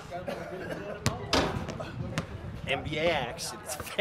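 Basketball bouncing on an outdoor court, a few separate knocks, then men shouting excitedly in the second half.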